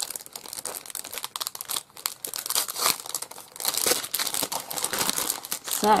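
A clear plastic cello bag holding a pack of paper ephemera crinkling as it is handled, in a run of irregular crackles that swell twice in the middle.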